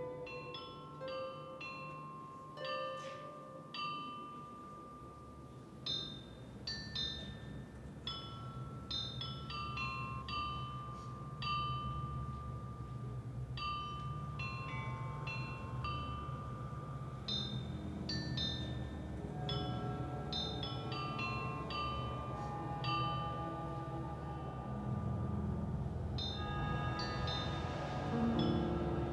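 Soundtrack music of struck, ringing bell-like notes, scattered high tones over a few held ones, with a low drone swelling in beneath from about halfway through.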